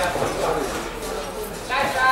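Voices calling out from ringside during a boxing bout, echoing in a large hall.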